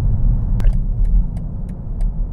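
Steady low rumble heard inside the cabin of a moving BMW X7 xDrive40d: road and tyre noise from its 24-inch wheels mixed with its 3.0-litre inline-six diesel. One sharp click a little over half a second in.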